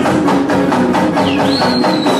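Live band music played loud over a PA, with a fast, steady percussion beat under keyboard and bass. A high whistling tone slides up about one and a half seconds in and then slowly glides down.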